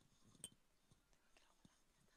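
Near silence: faint room tone of a large hall, with a few faint scattered noises and one small click about half a second in.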